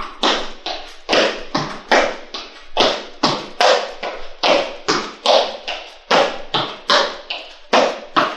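Trainers landing on a rubber gym floor during an A-skip drill: rhythmic footfalls, about two to three a second, each a short thud-tap.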